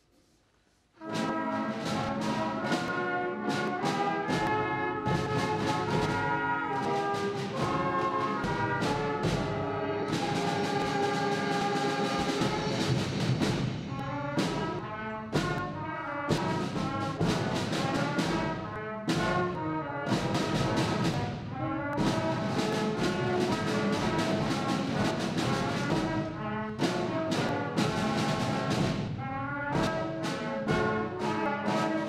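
School concert band of flutes, clarinets, brass and percussion starting to play about a second in, then carrying on with full ensemble music.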